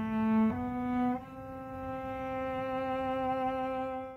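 Cello bowed in long held notes: one sustained note steps up in pitch about half a second in and again just after a second. The last note is held more softly.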